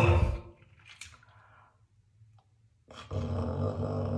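A man gagging on a throat swab as it brushes his tonsils: a short falling groan at the start, then from about three seconds in a rough, low gagging sound with his mouth held open.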